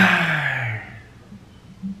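A man's drawn-out, wordless exclamation, loud and breathy, sliding down in pitch and dying away within the first second.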